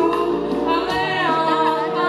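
A boy singing a Hebrew pop song into a handheld microphone over instrumental backing music, his voice gliding between sustained notes.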